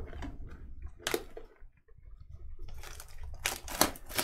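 Cellophane shrink-wrap on a sealed trading-card hobby box being crinkled and torn open by hand. It comes as a few sharp crackles, about a second in and again near the end, with a quiet pause between.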